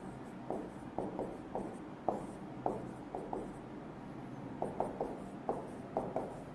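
Marker pen writing on a whiteboard: a string of short, irregular strokes and taps, one or two a second.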